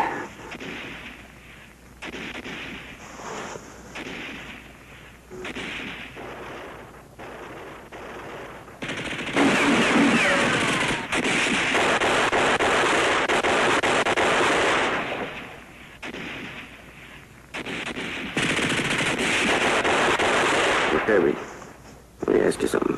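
Scattered, quieter gunshots, then two long bursts of machine-gun fire: the first starts about nine seconds in and runs some six seconds, and a second, shorter burst comes near the end.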